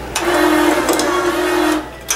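Bench-top bottle capping machine running for about a second and a half with a steady motor hum and whir as its spinning chuck screws a cap onto a glass oil bottle, then stopping.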